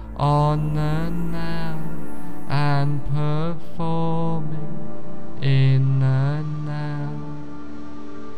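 Meditative music with a chanting voice singing a run of held, wavering notes over a sustained low drone.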